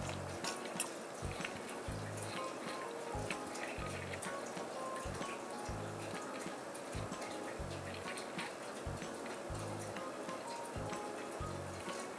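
Quiet background music with a steady low beat. Faint clicks and crinkles come from a cardboard-and-plastic blister pack being opened by hand.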